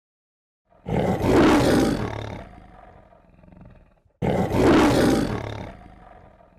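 The MGM lion roar, heard twice about three seconds apart. Each roar starts loud and trails off over a second or two.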